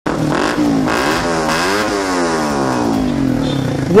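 Motorcycle fitted with a modified open-pipe ('bora-bora') muffler being revved loudly. The engine pitch climbs, peaks twice in quick succession, then slowly falls back over the last two seconds. This loud, unmuffled note is what marks the illegal modified exhaust.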